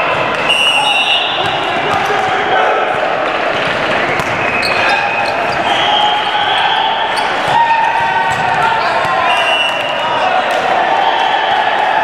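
Indoor volleyball play on a hardwood gym floor: a steady mix of players' voices and calls, sneakers squeaking briefly again and again, and scattered knocks of the ball being hit and bouncing.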